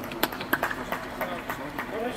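Men's voices calling out on an outdoor football pitch, with several short sharp knocks scattered through the moment.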